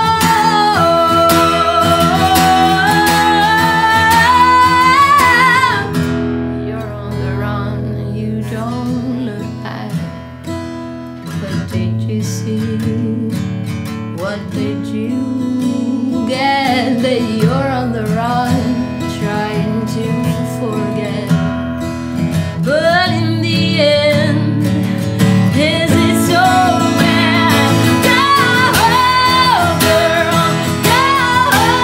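A woman singing live to acoustic guitar accompaniment. Her voice climbs in a long held line, drops out for several seconds while the guitar plays on, then comes back in shorter phrases.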